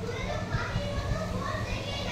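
Children's high voices talking and calling out, over a steady low hum.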